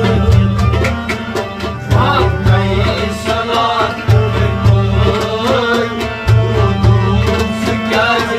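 Kashmiri Sufi song: a man singing in wavering, melismatic lines over a harmonium's sustained reed chords, with percussion keeping a steady beat.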